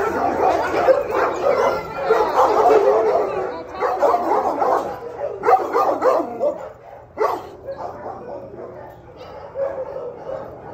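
Dogs barking and yipping, several calls overlapping, loud for the first six seconds or so and then fainter.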